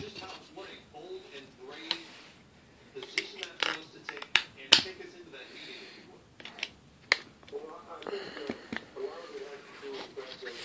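Handling of a TV remote's plastic battery compartment and batteries: a series of sharp plastic clicks and small knocks, several close together near the middle. A voice murmurs faintly underneath.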